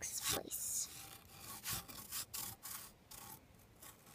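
Rubbing and scraping on a rough rock surface as it is wiped: a run of irregular strokes, loudest in the first half second and fading toward the end.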